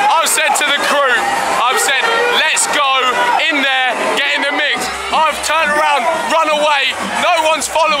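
A man shouting and whooping close to the microphone over loud dance music, whose low bass comes through most strongly in the second half.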